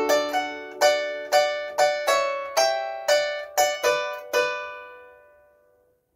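Harp strings plucked by hand, playing a short phrase of paired notes in thirds, about two plucks a second. The last pluck rings on and fades away over about a second and a half.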